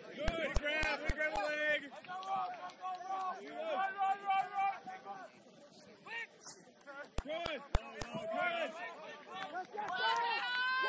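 Several voices shouting and calling out across a rugby pitch, the words unclear, some calls held longer. Two short runs of sharp clicks cut in, one about a second in and another past the seven-second mark.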